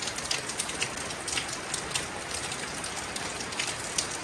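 Steady rain falling on a wet surface, an even hiss with scattered sharp drop ticks.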